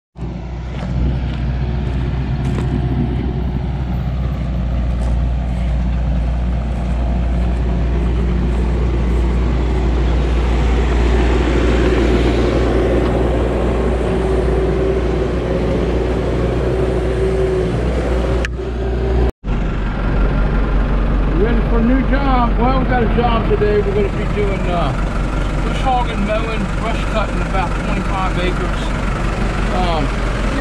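Farm tractor's diesel engine running steadily, a constant low drone, with a brief break about two-thirds of the way in. After the break a voice-like sound lies over the engine.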